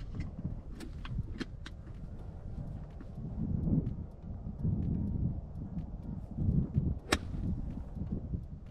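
Golf iron, most likely a seven iron, striking a golf ball once with a single sharp crack about seven seconds in, against a low rumble of wind on the microphone that swells and fades, with a few faint ticks near the start.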